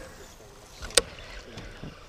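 Quiet boat-on-the-river background with one sharp knock about a second in.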